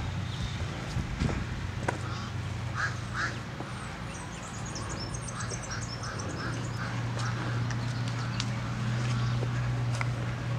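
Poultry calling: two calls about three seconds in, then a run of short, evenly spaced calls at about three a second. High small-bird twittering comes in briefly in the middle, over a steady low hum.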